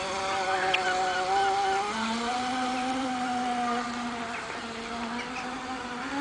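Radio-controlled Graupner Jet Sprint model jet boat running on the water, its electric motor and jet drive giving a steady buzzing whine. The pitch steps up about two seconds in, and the sound grows fainter toward the end as the boat moves off.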